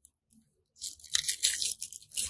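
Scraping, rustling handling noise of a Mamiya 645 Pro 120 film insert and its holder being worked apart, starting about a second in after a short silence.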